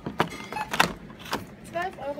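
Small toiletry packages (cardboard boxes, a plastic blister pack and a small tin) set down one after another on a shop checkout belt: a quick series of sharp clicks and knocks in the first second and a half.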